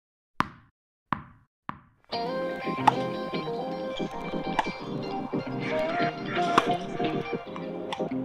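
Three short knocks, each quieter and closer together than the last, in a bouncing-ball sound effect. Then instrumental background music with a steady beat comes in about two seconds in.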